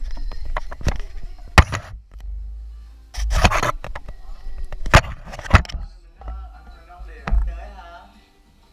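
Handling noise from a GoPro action camera being moved about by hand: low rubbing rumble and a series of sharp knocks on the camera body, the loudest about a second and a half in, with a few short voice sounds in the second half.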